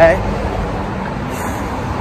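Street traffic going by: a steady rush of tyre and engine noise, with a low engine hum in the first second or so.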